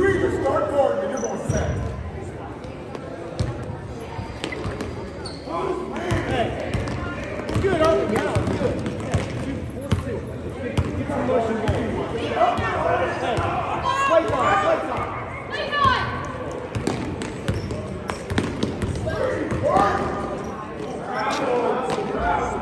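Basketball being dribbled on a gym floor, repeated thuds and sneaker squeaks of a youth game, with shouting voices of players and spectators throughout.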